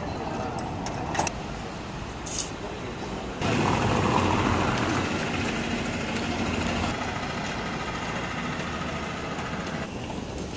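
City street traffic noise, with a motor vehicle running louder close by for a few seconds from about a third of the way in.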